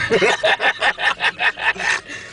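A person laughing hard in a quick run of bursts, about five a second.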